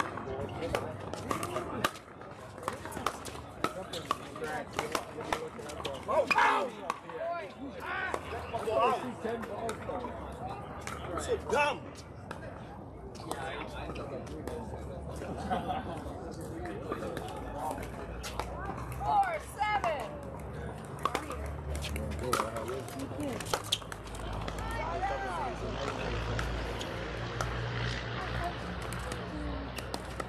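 Pickleball paddles hitting plastic balls: sharp pops scattered throughout from play on several courts, over people's voices.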